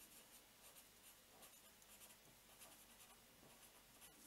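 A felt-tip pen writing by hand on a sheet of paper: very faint, irregular little strokes and scratches of the tip across the paper.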